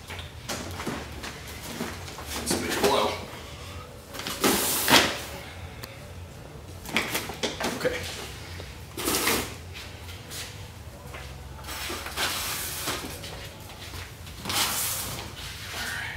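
Cardboard boxes of firework cakes being handled, slid and set down, in a series of scraping, rustling bursts every two to three seconds; the loudest comes about five seconds in. Voices can be heard in the background.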